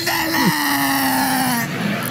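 A long, drawn-out wailing cry from a person's voice, holding one pitch and sinking slowly for about two seconds before breaking off near the end.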